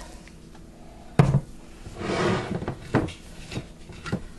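Kitchen things being handled and set down on a countertop: a sharp knock about a second in, a brief rustle, then another knock about three seconds in.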